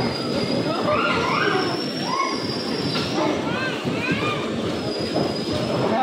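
Electric bumper cars running around a rink: a steady rumble from their motors and wheels on the floor, with a thin high whine over it.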